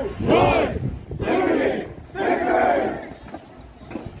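A column of marchers shouting a chant in unison: three loud shouted phrases, each under a second long, in quick succession.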